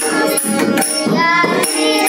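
A young girl singing a Marathi devotional abhang, with harmonium chords held underneath. Small hand cymbals (tal) clash in a steady beat about twice a second, and a hand drum plays along.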